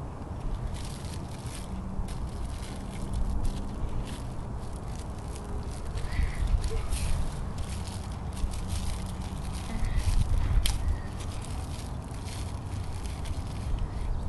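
Small plastic bag crinkling and rustling in the hands in short, irregular crackles as a necklace is unwrapped, over a steady low wind rumble on the microphone.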